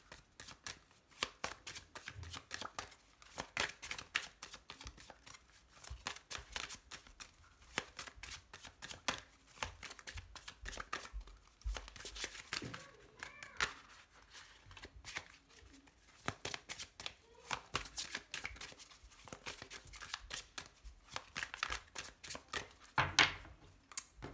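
A deck of oracle cards shuffled by hand: a long run of quick, irregular clicks and rustles as the cards slide and slap together, with short pauses between bursts.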